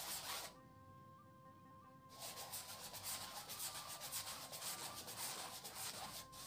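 A paintbrush scrubbing acrylic paint onto stretched canvas in quick back-and-forth strokes, a dry rasping rub several times a second. It pauses from about half a second in to about two seconds in.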